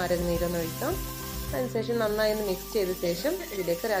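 Background music: a song with a singing voice over a steady accompaniment.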